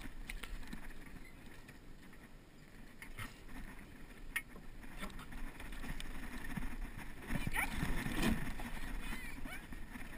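Water lapping and sloshing against the hull of a capsized sailing dinghy in calm water, with a couple of sharp knocks from the boat partway through.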